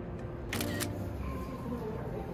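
Camera shutter sound effect: one short shutter snap about half a second in, marking a snapshot, over a steady low hum.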